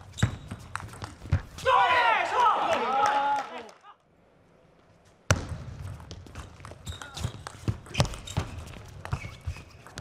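Plastic table tennis ball clicking off rackets and the table in fast rallies, hit after hit in quick succession. A loud drawn-out shout rises over the hits about two seconds in, then the sound drops out briefly before a new rally's hits start about five seconds in.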